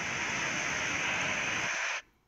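Floodwater rushing in a torrent down a steep road, a steady even rush of water that cuts off suddenly near the end.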